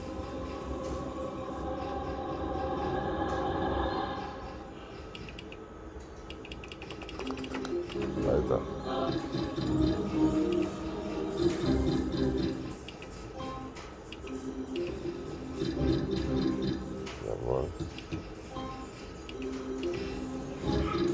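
Novoline Book of Ra slot machine during free spins, playing its electronic jingles and reel tones: steady held tones, then short stepped melodies that repeat as the spins land and the winnings count up.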